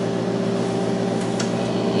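Steady electrical hum from running bench test equipment, a few constant low tones held throughout, with two faint clicks close together a little past halfway.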